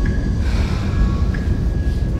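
A steady low rumble with two faint thin high tones held above it.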